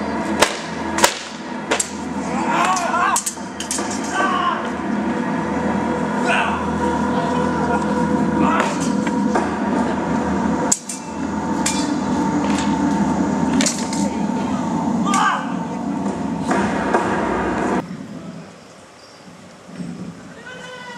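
Swords clashing against swords and shields in a staged fight: a string of sharp, irregular hits over a steady background that cuts off shortly before the end.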